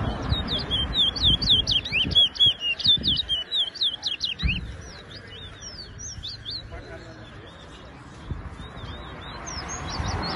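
A towa-towa (large-billed seed finch) singing a rapid run of high, quick whistled notes. The song is densest in the first three seconds, then turns sparser and fainter, with a few more notes near the end.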